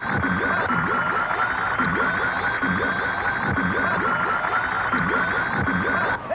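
Electronic sci-fi transformation sound effect from a film soundtrack: a steady high whine over a low warbling pulse that repeats about twice a second.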